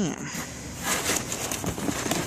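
Handling noise: irregular rustling and light scraping as wooden gun stock parts and packing material are handled, with a brief louder stretch about a second in.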